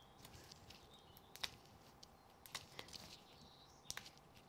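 Near silence, with a few faint, sharp ticks of fingers picking and peeling the backing papers off small foam mounting pads on a card frame.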